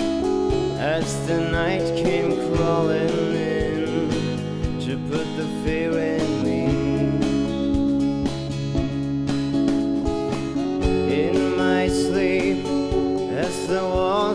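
Music: an instrumental break of a pop-rock song, with a lead electric guitar playing bent, wavering notes over rhythm guitars and drums.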